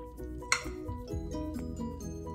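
Background music with steady melodic notes. About half a second in, a single sharp clink of a metal fork against a glass bowl, the loudest sound, with a brief ring.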